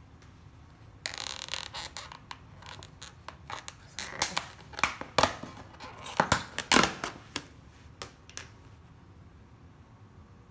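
Clear plastic takeout container lid being pried open by hand: thin plastic crinkling and scraping, with a quick series of sharp clicks and snaps loudest in the middle as the lid's rim pops free.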